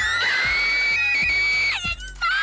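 Children squealing with excitement: a high-pitched scream rises, is held for about a second and a half, then stops shortly before the end. Background music with a steady beat plays underneath.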